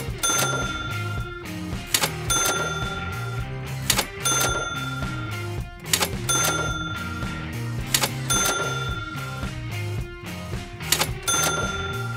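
Cash-register 'ka-ching' sound effects: a sharp click followed by a ringing bell tone, repeating about every two seconds over background music with a steady beat.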